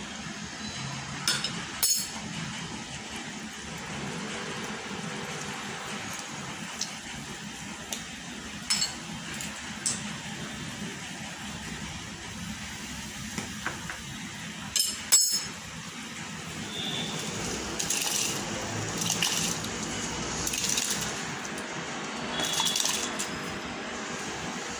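A steel ladle clinking against the rim of a steel pot, a handful of sharp knocks, over the steady bubbling of water at a rolling boil. Near the end come several louder splashing swishes of water.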